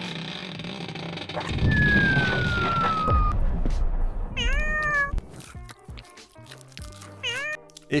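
A tower of wooden toy blocks toppling and clattering, under a falling whistle, followed by a cat meowing twice.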